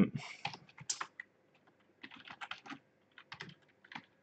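Typing on a computer keyboard: irregular key clicks in short runs.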